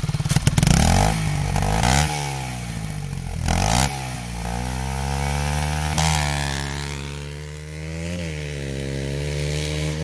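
Blata 125 four-stroke dirt bike engine pulling hard and accelerating through the gears: the pitch climbs, drops sharply at each upshift, about four times, and climbs again.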